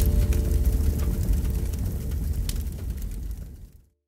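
Deep rumbling fire-and-whoosh sound effect from a programme title sting, with a held low chord underneath, fading out to silence just before the end.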